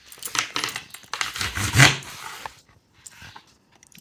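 Fresh-cut semolina pasta strips being rubbed and tossed by hand on a floured wooden pastry board, a dry scraping rustle ('fric fric') that goes on through the first two and a half seconds, then stops.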